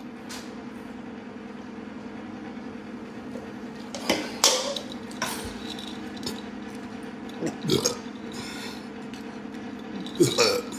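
A man burping after gulping soda from a can, a few short burps over a steady low hum.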